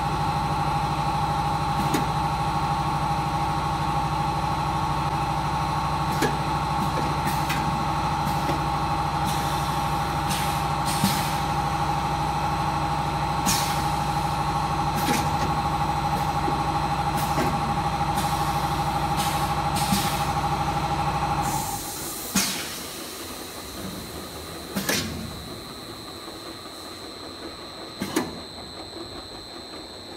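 An eight-head inline piston filling machine running: a steady mechanical hum with scattered sharp clicks and knocks. About 21 seconds in, the hum stops abruptly, leaving a quieter space broken by a few sharp hissing knocks.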